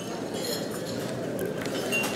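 Light clinks of cutlery and glassware from diners at tables, a few faint ringing clinks over steady room noise.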